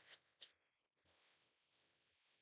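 Near silence, with two faint short clicks of tarot cards being handled in the first half-second.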